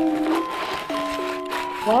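Background music of held notes that step from one pitch to another. Under it, crumpled kraft packing paper rustles as it is pulled out of a cardboard box. A voice says "whoa" right at the end.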